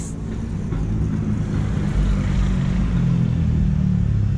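A motor vehicle's engine running steadily with a low hum, and road noise swelling a little from about halfway through.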